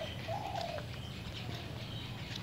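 A dove cooing faintly: two or three low, steady cooing notes, the clearest about half a second in.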